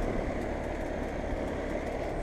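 Ruud 2-ton 13 SEER central air conditioner condensing units running: a steady rushing noise from the outdoor fan over a low hum.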